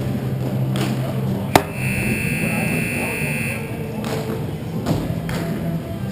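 A sharp crack about one and a half seconds in, then an arena scoreboard buzzer sounding steadily for about two seconds before cutting off, over steady low music and voices in the rink.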